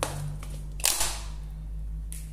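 Sharp clicks and a brief crinkling rustle from the guanidine hair-relaxer kit's packaging being handled: one click at the start, then two close together a little less than a second in. A steady low hum runs underneath.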